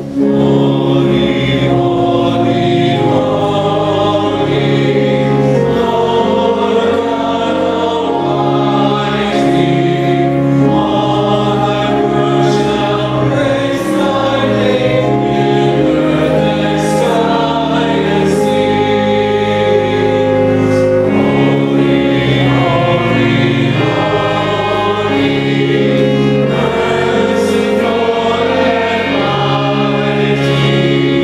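Church choir singing a hymn with instrumental accompaniment, in long held notes: the offertory hymn of a Catholic Mass.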